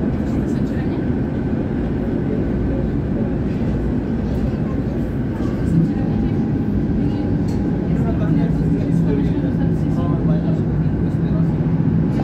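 City tram running along street rails, a steady rumble of wheels and running gear. A steady low hum joins just before six seconds in.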